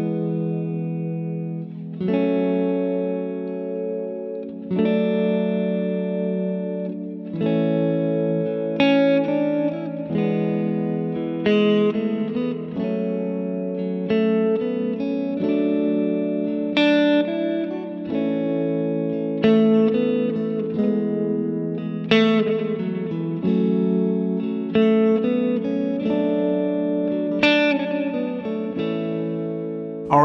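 Telecaster-style electric guitar playing small three-note triad chords of an A major progression (A, E, F sharp minor, D) on the upper strings. Each chord rings for about two seconds at first. From about eight seconds in, quick single-note fills from the A major scale connect the chords.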